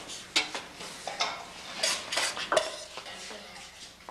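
Several short, sharp clinks of tableware being handled, about five in four seconds.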